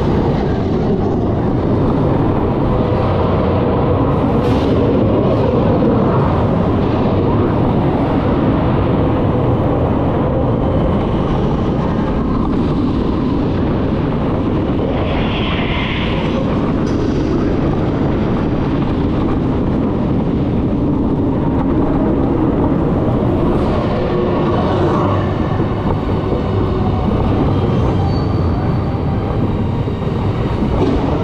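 Darkoaster roller coaster train running along its track, a loud, steady rumble heard from the front row, with a brief higher sound about halfway through.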